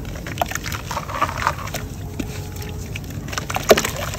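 Dry chunks of red mud crushed and crumbled by hand: a run of gritty crunching and crackling as the pieces break apart, with one louder crack near the end. Crumbs drop into a basin of water below.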